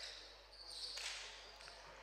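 Faint court sound of a basketball game in a gym: players' shoes and the ball on the hardwood floor, with a few faint high squeaks in the first second.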